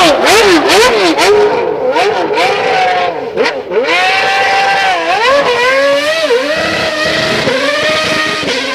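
A racing engine revving up and down rapidly, about two to three times a second, with sharp crackles. It then holds a steady high pitch that dips twice.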